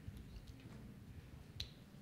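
Quiet room tone with a few faint, short clicks, the clearest about one and a half seconds in.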